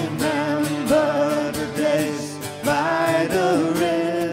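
A woman singing into a microphone over a strummed acoustic guitar, with long held notes that bend in pitch.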